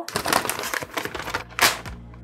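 A large paper instruction leaflet being unfolded and handled, a quick run of crinkling paper rustles and crackles with one louder rustle near the end.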